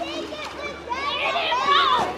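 Outdoor swimming pool ambience: many children's voices overlapping, calling and shouting. Louder, high-pitched shouts come in the second half.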